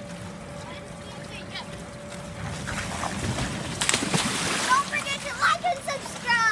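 A rider rushes down an inflatable water slide and splashes into its pool about four seconds in. Children's high voices follow the splash.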